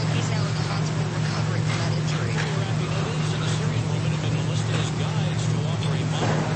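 Room sound of a congregation between speakers: a steady low hum under scattered rustling and shuffling movement.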